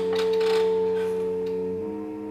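Chamber trio of B-flat clarinet, cello and prepared piano holding long notes; at the start a single clear, ringing tone sets in with a brief noisy attack and fades slowly over the low held notes.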